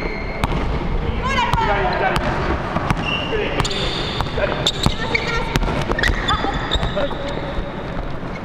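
Basketball being dribbled on a hardwood gym floor, with irregular sharp bounces, and sneakers squeaking on the court as players move. Players' voices are heard in the background.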